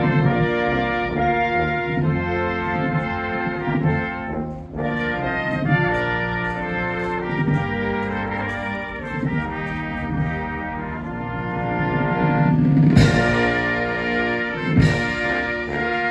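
Brass band playing slow, sustained ceremonial music, with a short break about a third of the way in and a few loud percussion strikes near the end.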